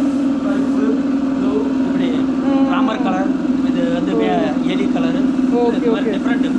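A steady low hum with people talking over it.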